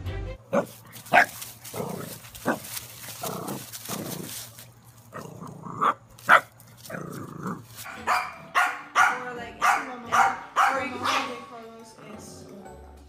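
Dogs barking: a few sharp barks in the first two and a half seconds, two more about six seconds in, then a fast run of high yaps over the last four seconds.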